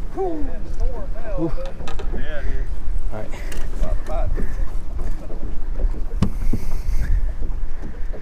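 Wind buffeting the microphone with a steady low rumble, with brief muffled talking in the first half and a single sharp knock about six seconds in.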